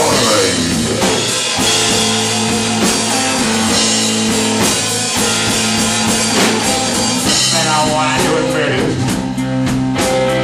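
Live blues-rock band playing: electric guitar over a drum kit, loud and steady.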